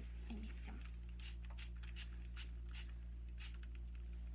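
Hand-held water mister spritzing, a run of about seven short hissing sprays roughly half a second apart, wetting the paper backing of an embroidery so it can be torn away.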